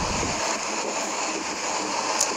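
Steady, even outdoor background rush with no distinct event, a low rumble fading out in the first half second.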